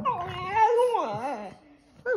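Boston terrier 'singing': one drawn-out, howl-like whine that wavers up and down in pitch for about a second and a half, then stops.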